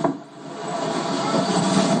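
A click, then a steady rushing background noise that swells over the first second and holds.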